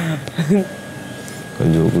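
Speech: two short vocal sounds in the first half second, then a man starts talking near the end.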